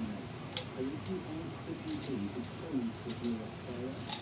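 Faint voices murmuring in the background, with a few brief light clicks as a salt container is handled over the cooking pot.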